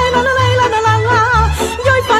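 Romanian folk band playing, with violins and clarinet carrying a wavering, ornamented melody over a bass line that changes note every half second or so. A woman sings 'la la' at the start.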